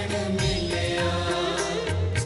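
Sikh kirtan music: a sung devotional chant over held harmonium tones and tabla strokes.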